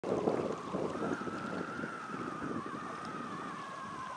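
Wind buffeting the microphone in gusts, strongest in the first second, over a thin steady whine that wavers and slowly falls in pitch.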